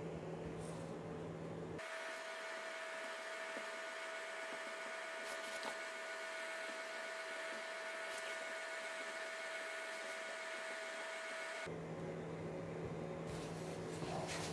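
Steady electrical hum and hiss. About two seconds in it abruptly changes to a steady higher-pitched whine and switches back near the end, with a few faint ticks as a marker dots the paper.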